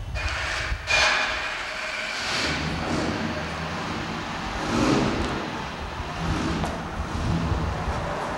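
Fiat 8V Zagato's V8 engine running as the car pulls slowly forward across gravel, with a loud burst of sound about a second in.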